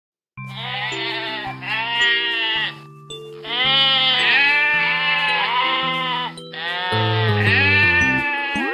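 Sheep bleating in about six long, drawn-out baas, coming in pairs, over a gentle children's-song music intro.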